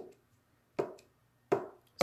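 A clear acrylic stamp block pressed down onto card stock on a table three times, a short knock each time, about three-quarters of a second apart.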